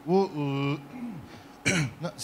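A man's voice, not in words: a short exclamation, then a held, steady vowel and a falling one, and a brief breathy noise like a throat clearing near the end.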